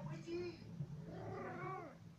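A domestic cat meowing: a short call near the start and a longer call that rises and falls in pitch in the second half.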